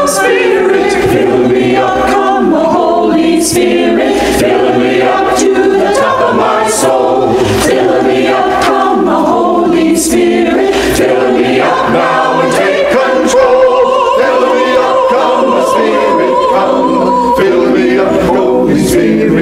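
Mixed church choir of men and women singing together, with long held notes.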